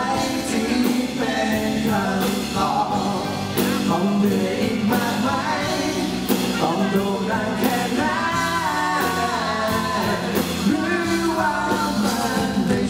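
Live pop-rock performance: two male vocalists singing a duet through microphones, backed by a band with acoustic guitar, bass guitar and drums.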